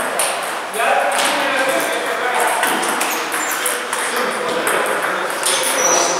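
Table tennis balls clicking repeatedly off the table and paddles, with people talking in the background.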